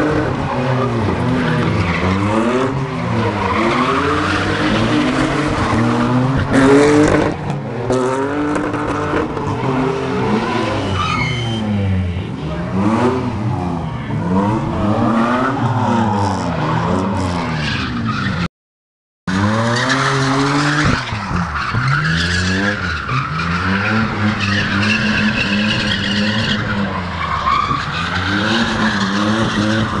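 Drift cars, among them a white BMW E34 5 Series, with engines revving up and down again and again as the tyres squeal and skid through slides. The sound drops out for under a second a little past the middle.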